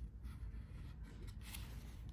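Faint handling of a cardboard board book as a page is turned, a few soft ticks and rubs over low room hum.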